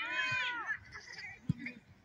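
A single high-pitched call from a voice, rising and then falling, lasting about two thirds of a second. A brief low thump follows about a second and a half in.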